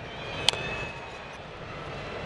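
A single sharp crack of a baseball bat fouling off a pitch about half a second in, over steady ballpark crowd noise.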